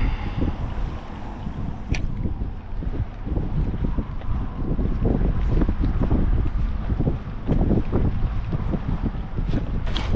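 Wind rumbling on the microphone, with water lapping and slapping irregularly against the hull of a small boat drifting on choppy water.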